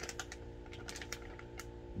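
A plastic food bag crinkling as it is handled: a string of small, irregular clicks and rustles over a steady low hum.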